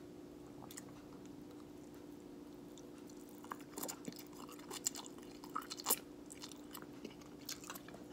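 A person eating instant ramen noodles close to the microphone: faint, irregular chewing and slurping mouth sounds, short wet clicks and smacks that begin about three and a half seconds in.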